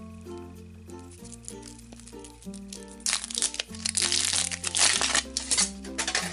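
Foil wrapper of a giant Kinder Surprise chocolate egg being crinkled and peeled off, loud and crackly from about halfway through, over background music with a slow-moving bass line.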